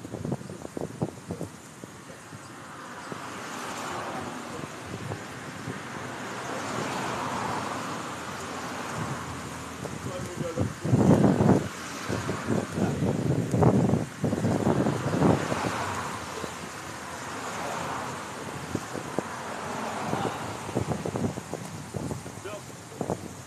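Dull thumps of forearm and back strikes against a coconut palm trunk, bunched together in the middle, over a steady rush of wind and distant traffic.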